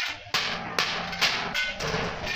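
Irregular metal knocks and clanks of hammering in a sheet-metal workshop, several a second, some leaving a brief ringing tone.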